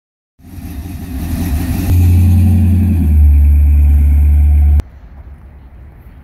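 Chevrolet 350 small-block V8 of a 1966 Ford F100 rat rod running as the truck drives, getting louder over the first couple of seconds and then loud and steady with a deep low rumble. It cuts off suddenly about five seconds in, leaving faint outdoor noise.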